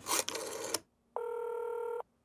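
Telephone-call sound effect: a short scratchy noise of the line or dialing, then a steady ringing tone on the line from a little past halfway. The tone cuts off suddenly as the call is answered.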